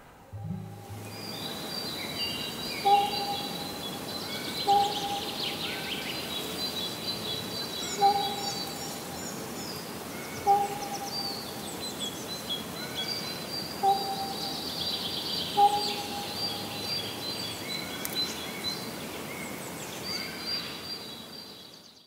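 Many birds chirping and trilling together over a steady outdoor hiss, with a lower, clearer call note repeating every two to three seconds; the sound fades out at the very end.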